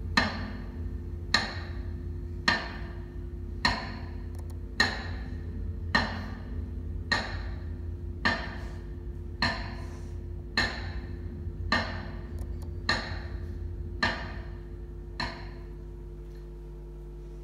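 Slow metronome beats, just under one a second, marking a minute of silence, over a steady low hum. The final beat near the end is fainter.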